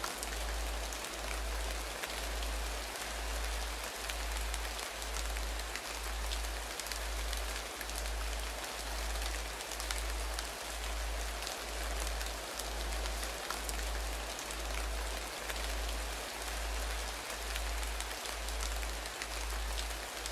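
Rain ambience: a steady even hiss with scattered drops, over a low droning tone that pulses on and off a little more than once a second.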